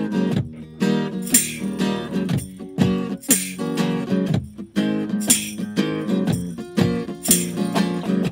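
Acoustic guitar strummed in a steady rhythm, an instrumental passage with sharp accents about every two seconds.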